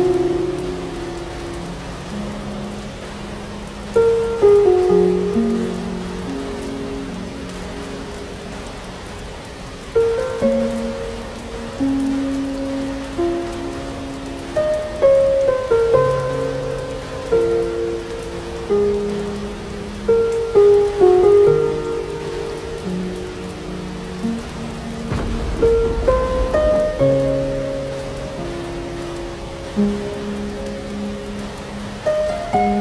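Slow plucked-string music, one note at a time, over a steady patter of rain, with a brief low rumble of thunder near the end.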